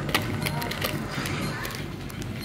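Plastic packaging being handled: a run of sharp, irregular clicks and crinkles.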